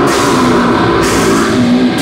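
A heavy metal band playing live and loud: electric guitars over a drum kit.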